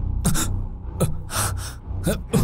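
Dramatic sound effects: three quick whooshes, each with a falling tone, over a low steady drone.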